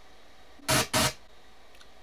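Ubuntu 5.04's login drum sound garbled by VMware's faulty sound emulation, coming out as two short, loud bursts of static less than a second in instead of bongo drums.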